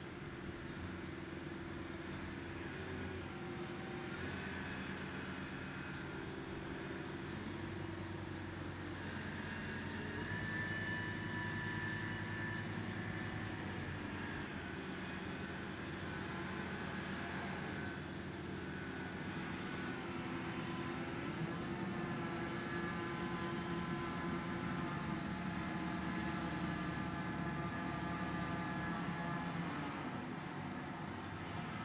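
Mobile crane's diesel engine running steadily under load as it lifts and swings a large water tank, its revs shifting a few times, with a rise about twenty seconds in.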